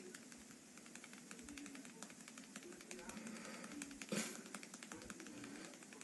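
Faint, irregular light clicks and taps over low background voices, with one sharper knock about four seconds in.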